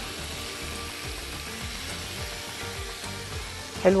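Chicken breast pieces sizzling steadily in hot oil in a large frying pan, being seared to take on colour, with soft background music underneath.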